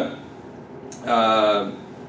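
A man's voice: a pause, then about a second in a single drawn-out vowel sound held for just over half a second, a hesitation filler between words.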